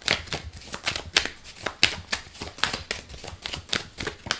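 A deck of tarot cards being shuffled by hand: a quick, irregular run of short card clicks and slaps.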